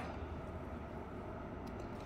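Faint steady room tone with a low hum and no distinct events.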